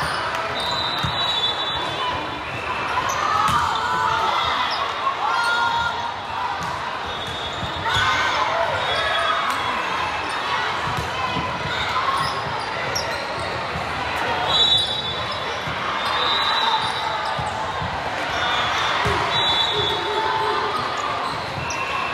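Indoor volleyball play in a large reverberant gym: repeated sharp ball contacts and footwork on the hardwood court under a steady hubbub of player and spectator voices.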